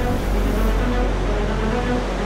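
Steady rush of a fast-flowing flooded river with a deep low rumble, under background music with a few held notes.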